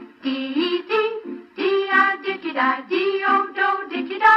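A group of voices, women's voices prominent, singing a nonsense alphabet song in short, clipped syllables, a few notes a second, now on the letter D.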